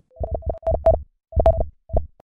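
Electronic intro stinger for a logo animation: a run of short, clipped synth notes on one pitch over low thuds, in a stuttering rhythm with a brief gap about a second in.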